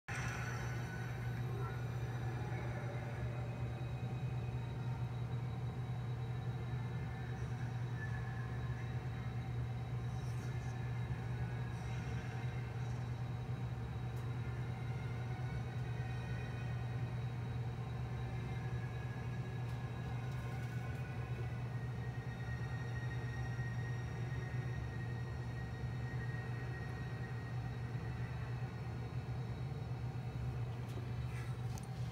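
A film soundtrack playing through a computer's speakers: a steady low drone with faint music and effects over it.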